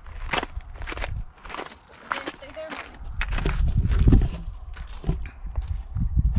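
Footsteps crunching on a gravel trail, about two steps a second, with a low rumble swelling up in the middle.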